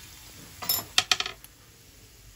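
A few quick, light clinks of kitchenware against a stainless steel frying pan, bunched together a little over half a second in, over the faint sizzle of vegetables frying in oil.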